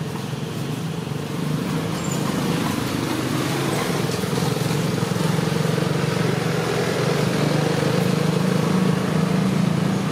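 A steady engine hum, like a motor vehicle running, swelling a little in the first couple of seconds and then holding.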